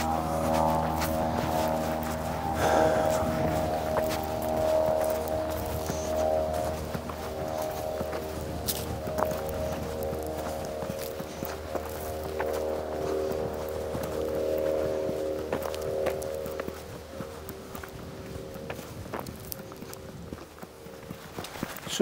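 An unseen aircraft overhead, its engine making a steady multi-tone drone that the speaker calls quite loud, slowly fading out over the last few seconds. Footsteps on a sandy track can be heard under it.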